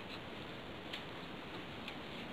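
Faint, evenly spaced ticks about once a second over a steady low hiss.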